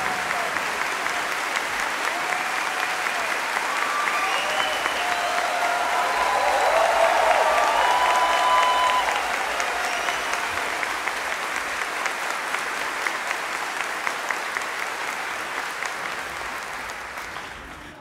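Concert audience applauding after the orchestra finishes, with a few voices calling out. The applause swells about halfway through and then fades away near the end.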